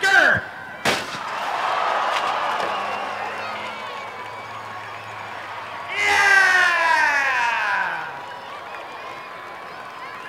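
Small car crashing into a pile of shopping carts and face masks about six seconds in, the loudest moment, followed by a pitched sound that falls over the next two seconds. A sharp knock comes about a second in.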